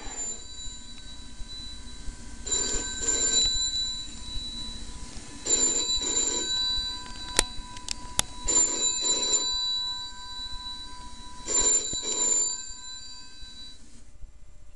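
Telephone ringing in a double-ring pattern: four rings about three seconds apart, each a quick pair of pulses. Two sharp clicks fall between the second and third rings.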